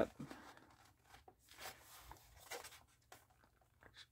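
Faint paper handling: soft rustles and light taps of a folded sheet and a manila file folder being held and shifted, with a pencil making a small mark.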